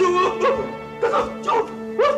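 A man moaning and whimpering in distress, short wavering cries about two a second, over a steady background music score.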